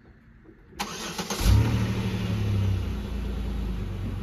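Chevrolet Monte Carlo's engine starting: a brief crank about a second in, catching with a quick rev flare, then settling into a steady idle.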